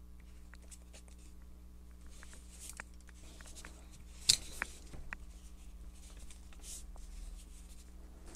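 Knipex Cobra pliers gripping and tearing a piece of the thin thermoplastic sleeve off a Wera L-key: faint clicks and rustles of plastic and metal jaws, with one sharp click about four seconds in.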